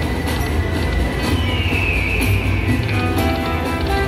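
Buffalo Xtreme video slot machine playing its free-games bonus music while the reels spin, with a tone that glides down in pitch near the middle.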